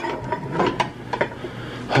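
Metal muffin tin clanking and scraping on the stovetop as it is knocked and jostled to free the baked egg bites: a string of light separate knocks and rattles.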